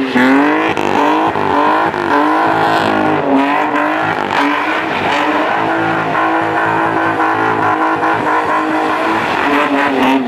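BMW 320's engine revving up and down again and again, roughly once a second, as the car spins donuts with its rear tyres spinning and squealing on asphalt.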